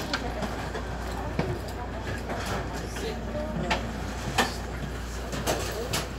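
Inside a moving commuter train car: the steady low rumble of the train running, with scattered light clicks and knocks and faint voices in the background.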